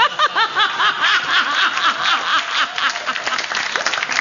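Audience laughing in quick rhythmic bursts, with applause building underneath and clapping filling the second half.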